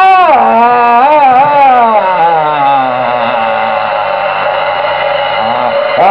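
A man's voice drawing out a long sung 'no' into a microphone. The pitch swoops up and down at first, then holds as one long note that slowly sinks.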